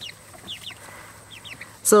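Cornish Cross broiler chicks peeping: scattered short, high chirps that slide down in pitch, a few each second, fairly soft.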